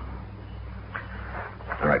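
A steady low hum from the old recording fills a pause in the dialogue. A man starts speaking near the end.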